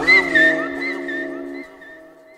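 Echo and reverb tail of a shouted 'a huevo' DJ drop: the voice's last syllable repeats and rings on as held tones, dying away over about two seconds.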